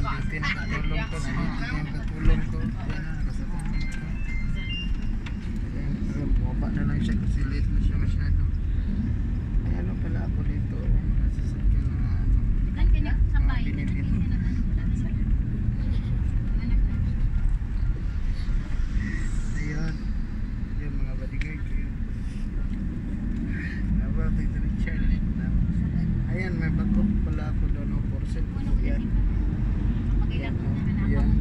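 Steady low rumble of a motor vehicle running and moving along a road, heard from on board, with faint voices over it.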